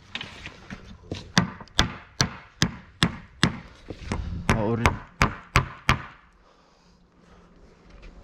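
Claw hammer striking repeatedly, fixing a wooden board to a metal profile: a steady series of sharp knocks, about two or three a second, that stops about six seconds in.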